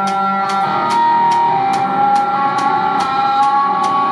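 Live instrumental rock from a guitar, bass and drums band: held, slowly shifting electric guitar notes over a steady cymbal beat, about two to three strikes a second.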